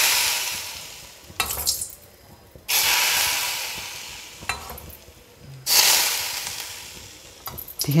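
Hot oil poured onto a pumpkin-leaf salad of chilli and ground roasted peanuts, sizzling in three bursts. Each starts suddenly and dies away over about two seconds.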